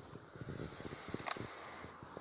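Irregular soft crackling and rustling from dry grass and handling close to the phone, with one brief sharper hiss a little past the middle.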